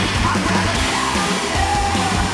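Loud, aggressive rock music, steady throughout.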